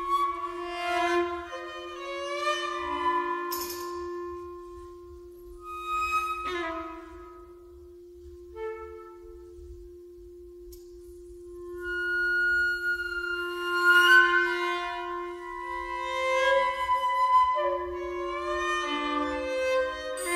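Chamber ensemble playing contemporary art music. One low note is held nearly throughout while higher sustained notes and short gestures enter and fade. The texture thins out in the middle and swells again in the second half.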